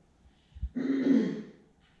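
A woman clearing her throat once, about a second in.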